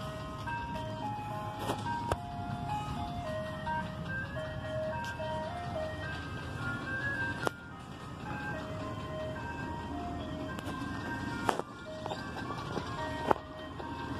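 Ice cream truck's loudspeaker playing its jingle, a simple tune of clear chiming single notes, over the low running of the truck's engine as it moves slowly along. A few sharp clicks cut in, the loudest two near the end.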